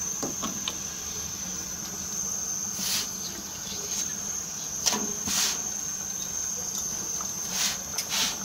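Curry simmering in ghee in a steel pot, with short hisses about three and five seconds in and again near the end, over a steady high-pitched whine.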